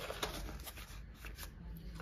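Faint rustling and light clicks of a small cardboard box being handled and set down.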